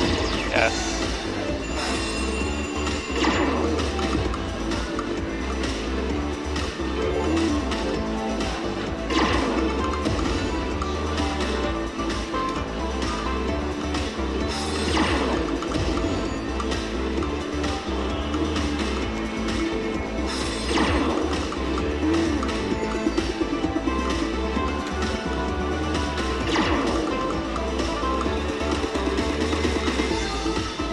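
Ultimate Fire Link Glacier Gold slot machine playing its bonus-round music steadily, with a crashing hit about every six seconds as each bonus spin lands.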